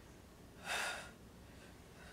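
A woman's single short, audible breath of exertion during a double-leg crunch twist, about half a second long and a little under a second in.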